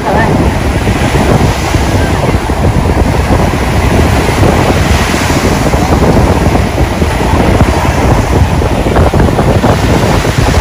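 Ocean surf breaking and washing in, with wind buffeting the microphone as a steady, loud rush.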